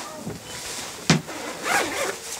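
Rustling and handling of a skydiving harness and suit as its straps and lines are adjusted, with one sharp click about a second in.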